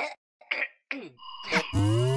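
Cartoon character voice coughing and clearing its throat in a few short bursts, the last falling in pitch. About a second and a half in comes a sharp click, then a rising electronic whine as a machine powers up.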